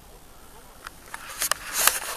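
Handling noise close to the camera's microphone: a faint outdoor hiss, then from about halfway a few sharp clicks and scraping rustles, the loudest near the end.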